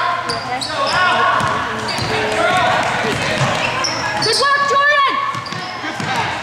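A basketball bouncing on a hardwood gym floor amid the overlapping voices of players and spectators.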